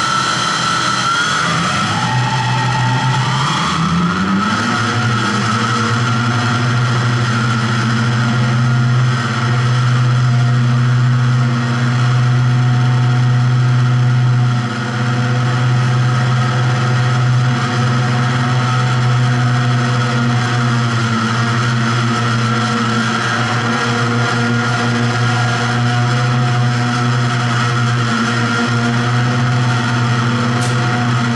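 Loud soundtrack of an art video played back through the room's speakers: a steady, machine-like droning hum with a higher whine above it, its low pitch sliding upward a few seconds in and then holding.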